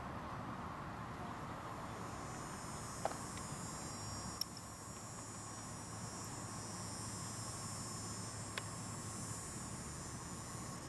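Faint outdoor summer ambience, mainly a steady high-pitched chorus of insects, with a few short faint clicks.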